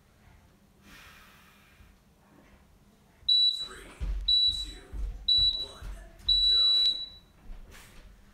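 Electronic interval-timer beeps: three short countdown beeps a second apart, then one longer beep, marking the end of a rest period and the start of the next work interval.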